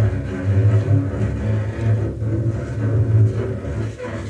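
Double bass bowed on long low notes, a deep drone in repeated strokes, with clarinet and saxophone holding soft tones above it in an experimental jazz piece.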